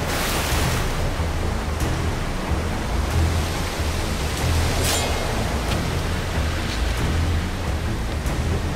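Rushing river rapids in heavy rain: a steady loud wash of water over a deep rumble, with splashes near the start and about five seconds in.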